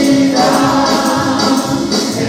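Group of voices singing a Spanish-language Christian worship song, with a tambourine jingling along.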